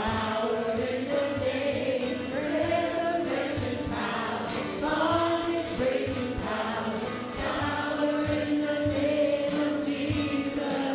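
Live worship band playing a gospel song: women's voices singing together over strummed acoustic guitars and a drum kit keeping a steady beat.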